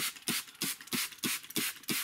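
Hand spray bottle squeezed rapidly, giving short hissing sprays of fine mist about three times a second as it moistens the surface of a freshly sown seed tray.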